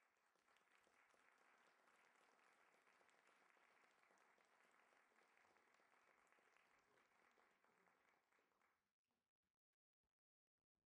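Near silence: audience applause turned down almost to nothing, very faint and even, dying away about nine seconds in.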